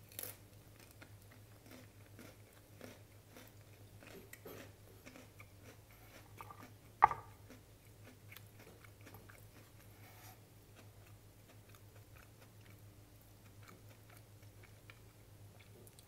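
A person chewing a mouthful of cracker and cheese, with faint crunching clicks throughout. A single sharp click about seven seconds in is the loudest sound, over a low steady hum.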